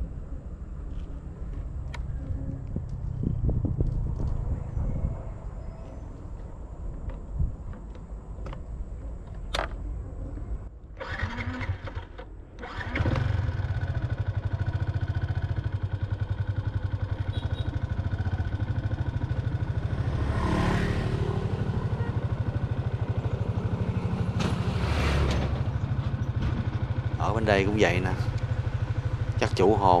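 A motorbike engine starts about a third of the way in and then runs steadily as the bike rides off; before it starts, wind rumbles on the microphone.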